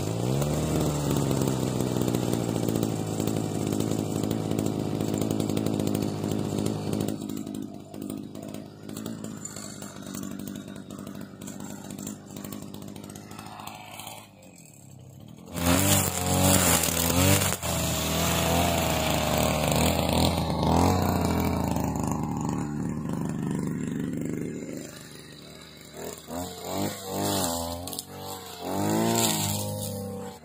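Two-stroke petrol brush cutter catching on the pull-start and running fast, then settling to a lower idle after about seven seconds. About halfway it revs up high and cuts grass with its steel-wire cutting head, the engine pitch rising and falling with the throttle.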